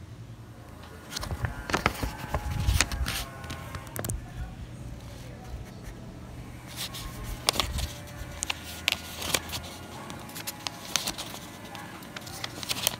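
Sheets of white paper rustling and flicking as fingers count them off a stack one by one, with irregular crisp clicks, a busy flurry a second or so in and another from about seven seconds in.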